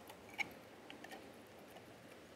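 Faint clicks from a stemmed wine glass and a playing card being handled. The sharpest is a light glassy clink about half a second in, followed by a few softer clicks about a second in.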